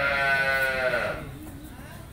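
A cow mooing once: a single high call about a second long that drops in pitch as it ends.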